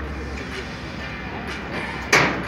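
Outdoor background at a sand court: a steady low rumble with faint, distant voices.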